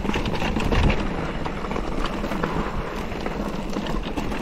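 Mountain bike rolling down a rocky trail: tyres crunching and rumbling over stone and gravel while the bike rattles with many small knocks, with a louder knock about a second in.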